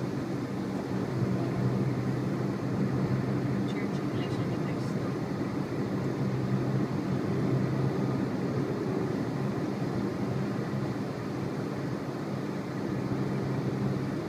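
Steady engine and road noise of a moving vehicle, heard from inside its cabin as a constant low hum.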